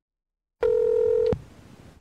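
A single electronic beep: a steady tone lasting under a second, starting after a brief silence and cut off with a click, followed by faint hiss.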